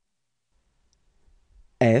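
Near silence with a couple of faint clicks, then a voice begins saying the letter F near the end.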